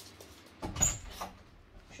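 Chihuahua puppies being handled on a laminate floor: faint scuffling, with one brief bump and a short, very high squeak about two-thirds of a second in.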